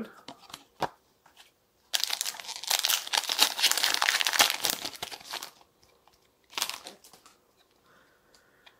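Foil wrapper of a Pokémon TCG booster pack crinkling and tearing as it is ripped open by hand: a dense crackle starting about two seconds in and lasting some three seconds, then one short rustle.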